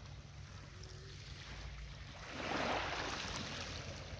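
Small waves lapping on a sandy shore, one wash of surf swelling up about two and a half seconds in and fading, over a steady low rumble of wind on the microphone.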